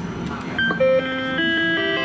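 Electronic beeps and jingle from a sigma Joker Panic! video poker medal machine during its Hi-Lo double-up: a few short tones and clicks, then a held bright chord from about a second and a half in as the card is revealed a winner.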